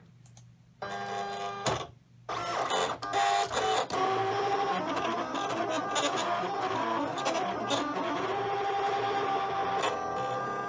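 Silhouette Cameo 4 cutting machine running a cut: its stepper motors whir in shifting steady tones as the blade carriage and rollers move the mat. A short run of motor sound about a second in stops briefly, then the machine runs continuously.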